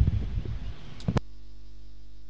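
Low, fading background noise, then a sharp click a little over a second in, after which a steady electrical mains hum of several even tones suddenly takes over.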